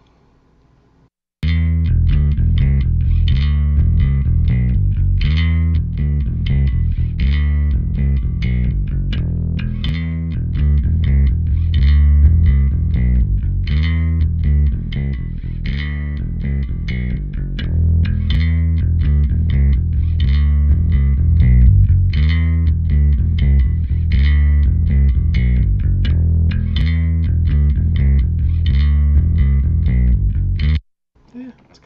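Electric bass line played through an Eden WT-800 bass amp simulator plugin, a busy run of sharply attacked notes that starts about a second and a half in and goes on without a break.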